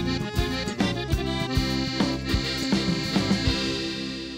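Instrumental theme jingle: a tune over a steady beat of about two and a half strikes a second, closing on a held chord that fades out near the end.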